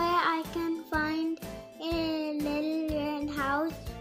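A young child's voice, sing-song, holding one drawn-out note in the middle, over soft background music.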